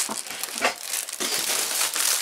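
Plastic packaging crinkling and rustling in irregular handfuls as the plastic-wrapped fabric screens are pulled out of a cardboard box.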